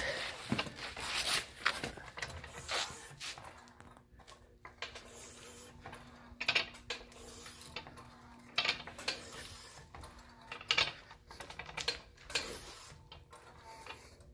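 Pittsburgh hydraulic floor jack being pumped to raise a car, with irregular metallic clicks and clanks from the handle and lifting mechanism.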